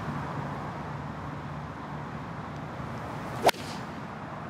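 A golf iron swung on the tee and striking the ball: a brief swish ending in one sharp, loud crack of impact about three and a half seconds in.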